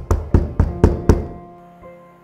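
A fist knocking rapidly on a closed door, about six knocks at roughly four a second, stopping after a little over a second. Soft piano music plays underneath.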